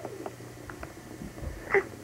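Baby sucking on its hand, making a few small wet mouth clicks over a steady low hum.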